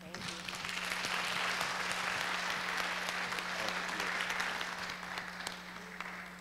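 Audience applauding, swelling within the first second, holding, then dying away near the end.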